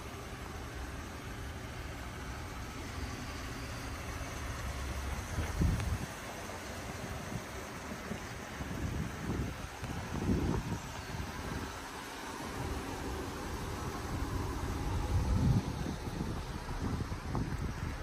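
Outdoor background noise with wind buffeting the microphone, swelling in several irregular low rumbles.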